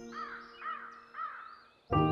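A bird, crow-like, calling three times, short calls about half a second apart, over the fading tail of background music.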